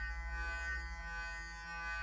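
Clarisonic Mia sonic brush with a foundation brush head running against the face: a steady, even-pitched electric buzzing hum.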